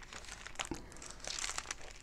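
Faint rustling and a few small clicks, picked up close on a clip-on microphone, during a pause between spoken phrases.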